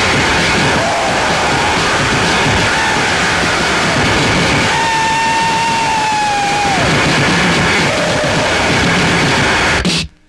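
Harsh noise music: a loud, dense wall of distorted noise with a held wailing tone in the middle, cutting off abruptly near the end.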